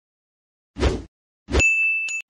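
End-screen animation sound effects: a short noisy hit about three-quarters of a second in, then a second hit at about a second and a half that rings on as a high, steady ding.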